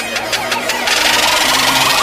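Logo-animation sound effect: a pulsing, buzzing riser that grows steadily louder, joined by a hissing whoosh about a second in.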